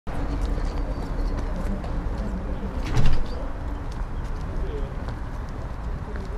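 Outdoor ambience: a low steady rumble, light footsteps on stone paving and faint distant voices, with one louder thump about halfway through.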